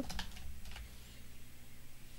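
Keystrokes on a computer keyboard: a quick run of clicks in the first second, then only a faint steady low hum.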